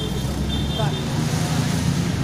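Street traffic: a steady low rumble of vehicle engines on a busy road.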